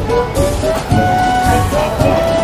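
Background music: a high melody of held notes that slide into pitch, over a low beat.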